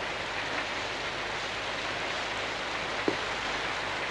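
Steady hiss of an old film soundtrack in a pause between lines, with one faint click about three seconds in.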